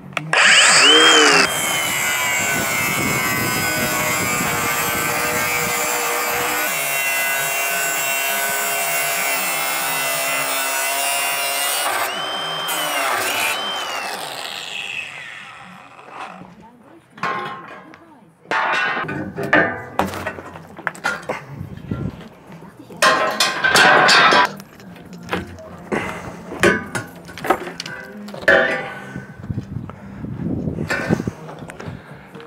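Würth AWS 18-125 P Compact M-Cube 18-volt cordless angle grinder spinning up and cutting through a metal railing: a loud, steady high whine for about ten seconds that dips in pitch twice as the disc bites, then winds down. A run of irregular clanks and knocks follows.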